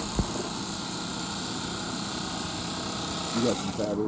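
Electric carving knife running steadily as it saws through a foam mattress, its motor noise stopping abruptly near the end.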